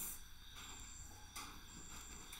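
Quiet room tone of a home recording setup: steady low hum and hiss, with one faint click a little past halfway.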